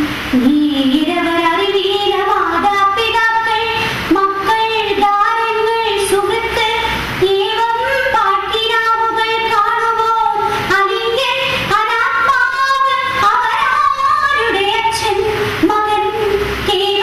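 A high-pitched voice singing a slow melody with long held notes that glide from pitch to pitch.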